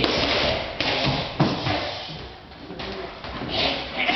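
Leather boxing gloves landing on gloves and guard in close sparring: several sharp punch impacts, the sharpest about a second and a half in, echoing in the hall, with a short hiss near the end.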